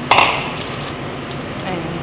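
Chopped tomatoes going into hot oil with sautéed onion and garlic in a steel pot: a sudden loud sizzle as they land, settling into a steady frying hiss.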